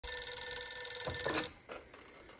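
Telephone bell ringing steadily, cut off suddenly about one and a half seconds in as the handset is lifted, with a few knocks of the handset being picked up just before.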